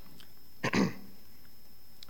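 A man clearing his throat once, briefly, under a second in.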